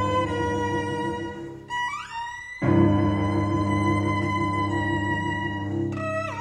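Violin and cello duo playing: the cello holds a low sustained note under a held violin line. About two seconds in the cello drops out while the violin slides upward in pitch, and the cello comes back in well under a second later.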